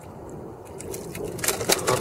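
A quick run of sharp knocks against the wooden hull of a dugout canoe about one and a half seconds in, as a hand-line catch is hauled aboard and comes off the hook.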